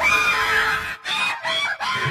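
High-pitched squawking cartoon vocal sound effect: short gliding calls repeated in quick phrases, with a brief gap about halfway through.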